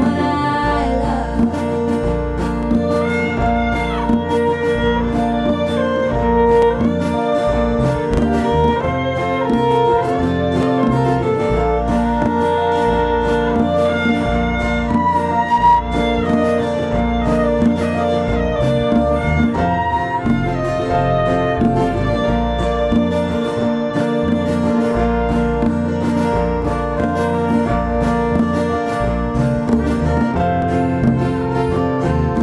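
Bluegrass-style band playing an instrumental break: a violin plays the lead melody over strummed acoustic guitars, bass and a steady beat.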